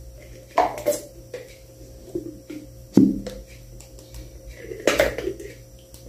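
Mayonnaise being squeezed out of its packaging onto a salad in a glass dish: a few short handling and crinkling sounds, the loudest about three seconds in, over a low steady hum.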